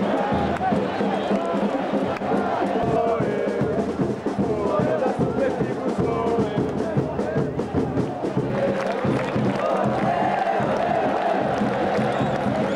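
Large football stadium crowd singing and chanting together: a dense, steady mass of many voices.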